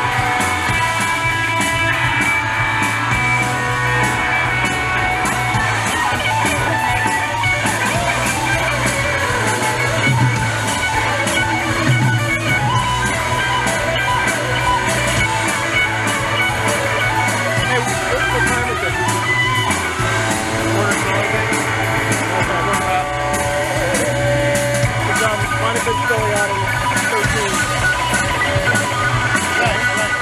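A live rock band plays loudly and continuously on electric bass, two electric guitars and drums, with gliding guitar notes near the end.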